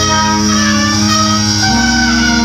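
Brass band playing a sustained chord with trumpets, trombone and tuba, the harmony shifting to a new chord near the end.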